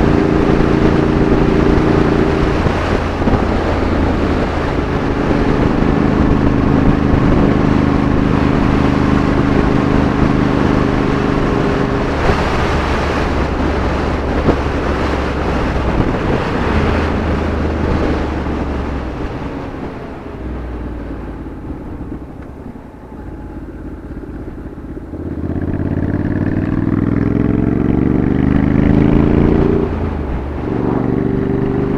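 Motorcycle engine heard from the rider's seat at cruising speed, a steady engine note with a rush of road noise over it. About two-thirds of the way in the engine note drops away and the sound goes quieter as the bike slows. Then the note climbs again as it speeds back up.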